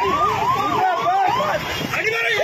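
A vehicle siren with a fast rising and falling wail, several sweeps a second, over a noisy crowd.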